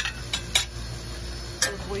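Metal spoon clinking against a stainless steel skillet of sautéed mushrooms: four sharp clinks, the loudest about a second and a half in.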